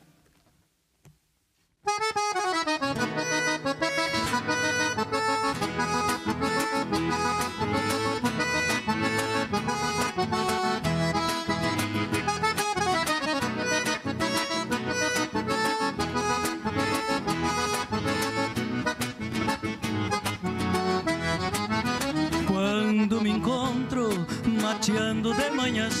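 Near silence for about two seconds, then a band starts the instrumental introduction of a gaúcho song. The accordion leads the tune over guitar and a steady beat.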